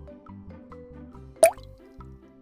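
Soft background music for children, with one water-drop 'bloop' sound effect about one and a half seconds in. The bloop is a quick upward glide, short and louder than the music, marking the change to the next slide.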